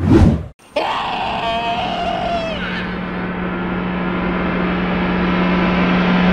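A sudden loud whoosh-like hit, then after a brief gap a long drawn-out cry that falls away about two and a half seconds in, over a swelling low string drone of dramatic film score.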